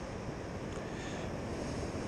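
Steady wind and surf noise, an even rush with no distinct events.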